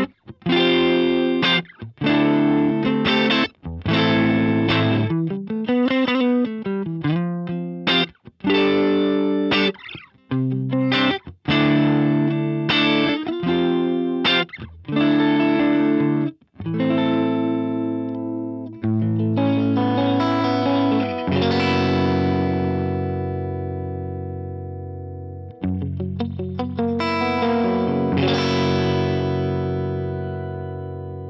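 Clean Stratocaster electric guitar on the neck single-coil pickup, played through the Fender Tone Master Pro's Deluxe Reverb amp model and a 1x12 EV cabinet impulse response. Picked chords and single-note lines with a few bent notes, then two long chords left ringing out near the end.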